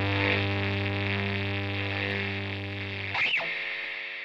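A distorted electric guitar chord, with bass, held and slowly fading as a song ends. About three seconds in a quick swooping pitch glide cuts through and the low bass note drops away.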